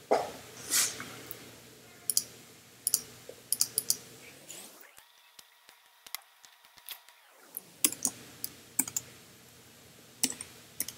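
Computer keyboard typing: scattered single keystrokes and short clusters of clicks, with a quiet pause of a few seconds in the middle.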